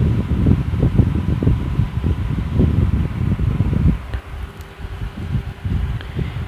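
Moving air buffeting the microphone: a low, irregular fluttering rumble that eases about four seconds in.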